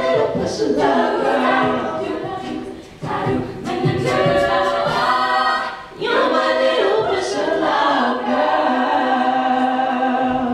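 All-female a cappella group singing, a soloist over sustained backing harmonies, in phrases with short breaks about three and six seconds in.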